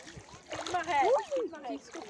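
Feet wading through shallow muddy water, splashing with each step, with voices in the background.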